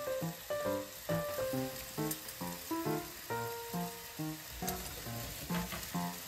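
Pork and mushrooms frying in a covered divided frying pan, with a steady sizzle. Background music of short melodic notes plays over it.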